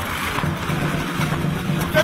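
Motorcycle and car engines running at low speed in slow-moving street traffic, a steady low hum under general street noise.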